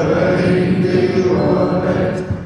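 Male singer's low, chant-like vocal through a handheld microphone over live band accompaniment.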